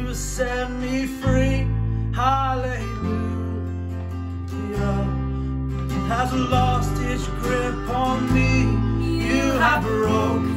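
Contemporary worship song: a man singing over strummed acoustic guitar and bass guitar, with low bass notes changing every second or two.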